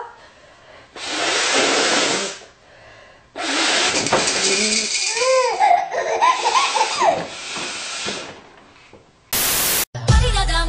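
Laughter in a small room, over two long rushing, hissing noises: one about a second in, another starting about three seconds in and running past the middle, with the laughing heard around the middle.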